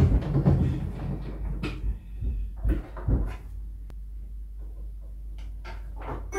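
Wooden knocks and small clicks as a Regina disc music box's cabinet and mechanism are handled to set it playing.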